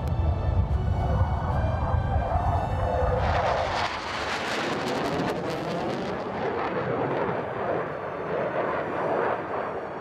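Dramatic background music, heavy with deep rumble for the first three seconds, then opening out into a fuller, brighter wash of sound.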